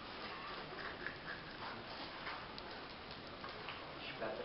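Faint scattered ticking and crackling over a steady low hiss as molten bronze is poured from a crucible into ceramic shell molds.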